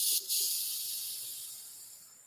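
A sharp, high hiss that starts suddenly, breaks off for a moment, then runs on and fades away over about two seconds.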